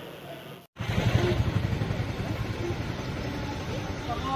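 A faint fading tail, then a brief dropout under a second in, followed by a steady low rumbling noise with no clear rhythm.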